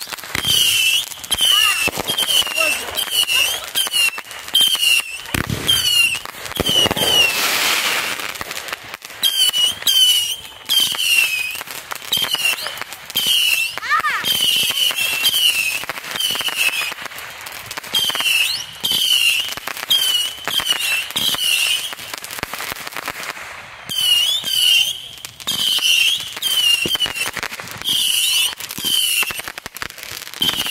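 Fireworks going off: a steady run of sharp pops and crackles, with a short high chirp repeating about twice a second.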